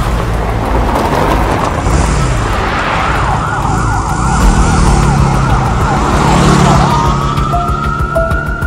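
A car speeds past on a dusty gravel road. A police siren then starts, running a fast up-and-down yelp with an engine revving beneath it, and turns into a long rising wail near the end, as a traffic police motorcycle sets off in pursuit.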